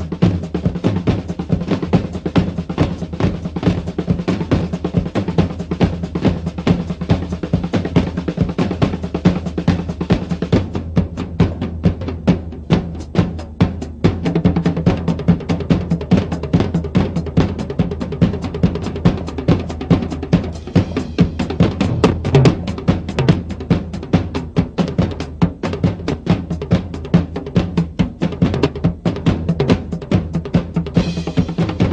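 Rock drum kit played hard and fast in a live band: a dense run of snare, tom and cymbal strokes over the bass drum, with a steady low bass beneath.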